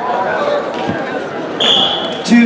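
A referee's whistle sounds one steady, high blast of about half a second near the end, amid a background of voices.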